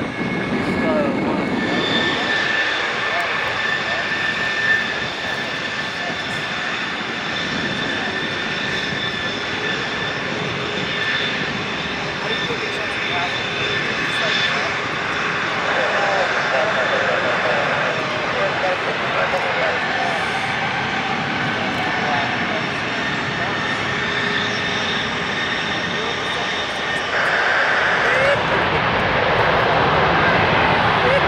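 Rolls-Royce Trent 700 turbofans of an Airbus A330-300 running at taxi power: a steady high whine over a rush of engine noise, growing louder near the end.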